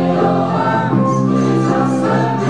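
A mixed group of amateur singers singing together in long held notes, accompanied by accordion.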